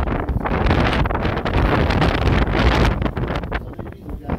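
Wind buffeting the microphone: a loud, rough noise that eases off near the end.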